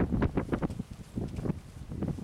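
Wind buffeting the camera microphone in uneven gusts, heaviest in the low rumble.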